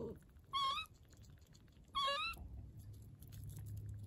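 Two short, wavering, squeaky complaining calls from a small pet curled up in a fleece hanging pouch, the second coming about a second and a half after the first.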